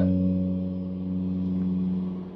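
Electric guitar letting a single low note ring out, sustaining steadily and slowly fading.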